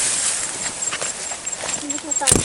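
Grass and bamboo leaves rustling and brushing as someone pushes through dense tall vegetation, with scattered small snaps and crackles of stalks.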